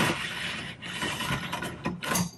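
A yellow insulated electrical wire being pulled hand over hand out of an outlet box through the conduit in the wall: a continuous rubbing noise of the wire sliding through the pipe, with a short break about a second in.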